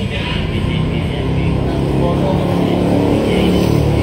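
A motor vehicle engine running steadily with a low hum, growing a little louder toward the end.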